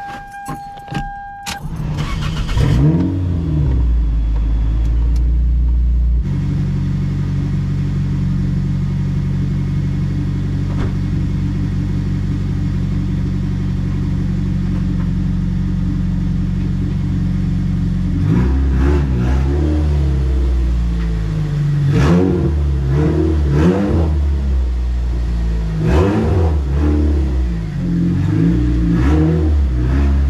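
Toyota MR2 Spyder's swapped-in 2ZZ-GE 1.8-litre four-cylinder engine: after a short steady beep, it cranks and starts about two seconds in, then idles steadily. In the second half it revs up and down in a series of short throttle blips as the car moves off.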